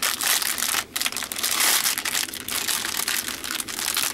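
Clear plastic bag crinkling as hands unroll and open it around a bundle of small drill bags: a dense, irregular rustle with a brief break about a second in.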